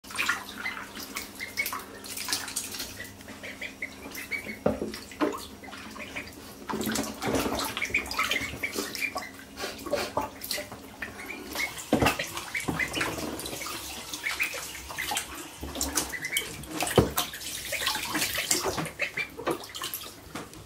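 Ducklings splashing and paddling in bathwater, with short high peeps scattered throughout and a few sharper splashes.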